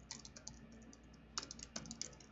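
Computer keyboard typing faintly: a few quick keystrokes near the start, then a denser run of keystrokes toward the end.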